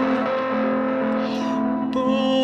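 Guitar music: several notes held together as a steady, sustained chord.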